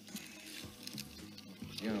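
Soft background music under a pause in the talk, with small soft handling sounds of food being worked by hand, and a voice starting near the end.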